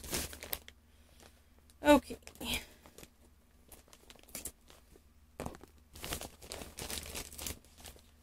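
Plastic packaging crinkling and tearing as it is handled, in scattered rustles at first and a busy run of crackling over the last few seconds.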